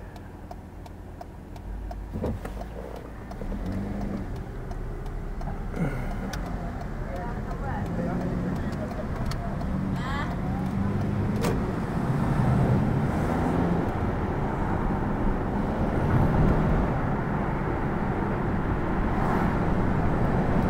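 Car pulling away from a standstill and accelerating, heard from inside the cabin: engine and road noise build steadily louder as it picks up speed. A few light clicks come through along the way.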